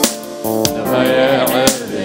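Live gospel worship music: a voice singing a wavering line over keyboard and guitar, with sharp percussive hits.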